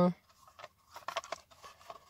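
Worn old cardboard box handled and turned over in the hand: light rustling with a few soft clicks, a cluster of them around the middle.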